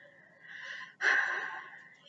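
A person's breath: a soft breath, then a louder, sharp intake of breath about a second in that trails off.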